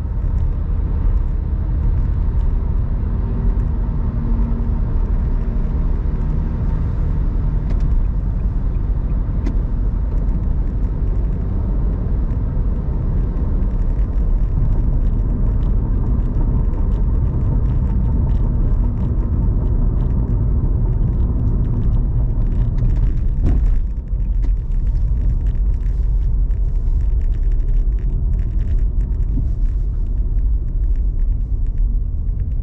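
Steady low rumble of a car driving at road speed, heard inside the cabin: tyre and engine noise, with a brief dip about three quarters of the way through.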